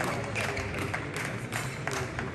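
Scattered clapping from spectators over a crowd murmur in a sports hall, a few separate sharp claps at irregular moments: the tail of applause after a point in a badminton match.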